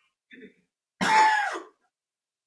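A man clearing his throat once, about a second in, lasting about half a second, after a faint short breath.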